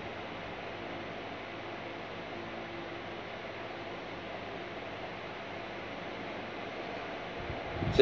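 Steady room tone: an even hiss with a faint hum underneath.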